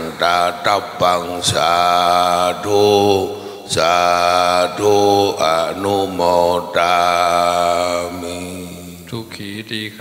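A Buddhist monk chanting a Pali blessing (anumodana) into a microphone, in long drawn-out notes on a steady pitch, broken by short gaps for breath.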